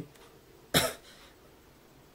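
A man coughs once, a single short, sudden cough about three-quarters of a second in, against faint room tone.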